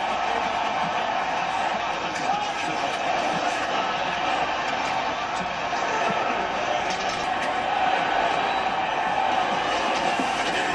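Hockey game broadcast playing on a TV in the room: a steady arena crowd noise with play-by-play commentary underneath.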